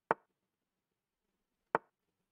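Two sharp wooden clicks about a second and a half apart: the online chess board's move sound effect, one click for each move played.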